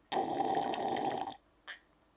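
A man drinking juice from a glass: a loud gulping sound lasting a little over a second that cuts off suddenly, then one short, brief sound near the end.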